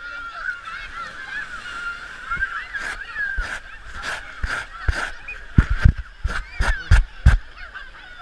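Sharp knocks and thumps of an action camera being handled in its housing, a dozen of them in the second half and closely bunched near the end, over a continuous wavering high-pitched chatter.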